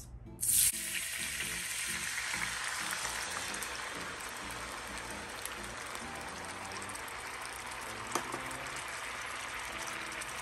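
Garlic butter poured into a hot cast-iron wok, hitting the pan with a sudden loud sizzle about half a second in, then frying with a steady sizzle that slowly eases. One light knock near the end.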